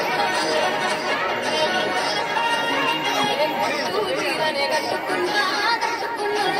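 A large crowd of children chattering, many overlapping voices at once with no single speaker standing out.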